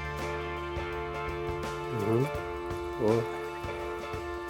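Background music of steady, sustained tones, with two short voice sounds about two and three seconds in.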